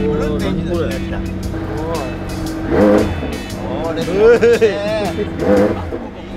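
McLaren 720S's 4.0-litre twin-turbo V8 idling steadily in neutral just after being started, under voices and laughter.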